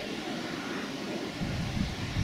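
Steady outdoor background noise, an even faint hiss. From about a second and a half in, low rumbling gusts of wind buffet the microphone.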